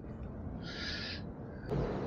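Alarm on a cruise ship's retracting airbridge-style gangway sounding one short, high, buzzy beep a little over half a second in, over a low steady background rumble.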